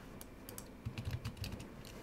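Computer keyboard keys clicking faintly, a scatter of keystrokes from copy-and-paste shortcuts.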